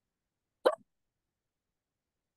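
One short vocal sound, a clipped voice-like blip well under a fifth of a second long, about two-thirds of a second in. Otherwise the call audio is dead silent.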